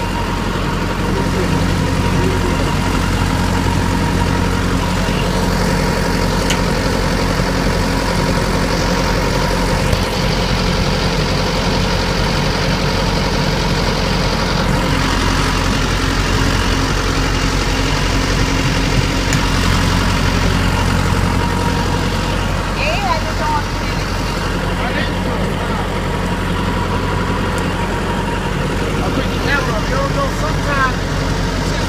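Semi-truck diesel engine idling steadily.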